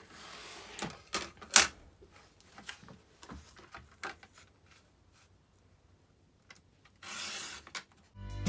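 A Fiskars sliding paper trimmer and paper being handled on a desk: a short rasp at the start, then a run of sharp clicks and knocks over the first few seconds, one of them louder. Near the end comes about a second of papery rubbing as paper is slid across the trimmer.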